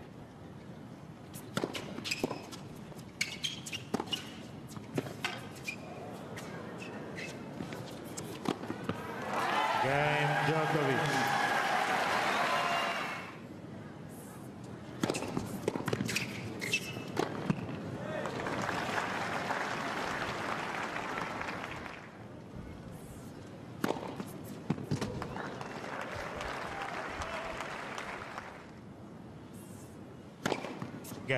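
Tennis play on a hard court: sharp racket strikes and ball bounces, broken by bursts of crowd applause and cheering after points. The loudest is a cheer about ten seconds in, with a voice calling out amid it, and two quieter rounds of applause follow later.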